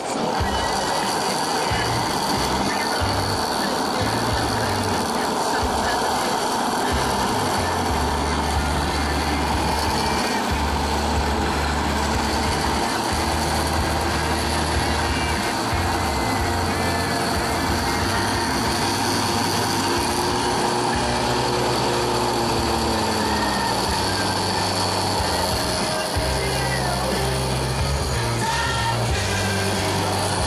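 Electric countertop blender switched on at the start and running steadily, blending a drink in its jar, with music playing underneath.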